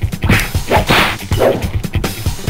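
Kung fu fight sound effects: several quick swishes and whacks of punches and blocks, about two a second, over background funk music with a drum beat.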